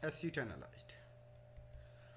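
A man's brief, soft spoken sound in the first half-second, then quiet room tone with a steady low electrical hum.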